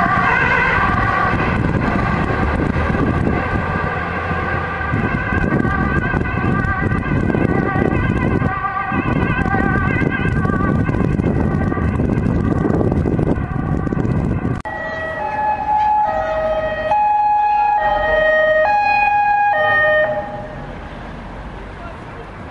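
Emergency-vehicle sirens with street traffic noise. At first a fast-warbling siren fades into the noise of traffic. From about two-thirds of the way in, a two-tone siren alternates between a high and a low note about once a second, then cuts off shortly before the end.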